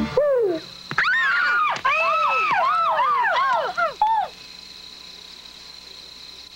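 Cartoon owl hooting: a quick string of hoots that each rise and fall in pitch, ending about four seconds in, after which only a faint steady hum remains.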